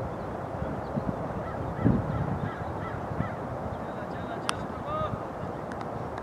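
Wind rumbling on the microphone over an open cricket ground, with a run of short repeated bird-like calls early on. About four and a half seconds in there is a single sharp knock, and just after it a short honk-like call.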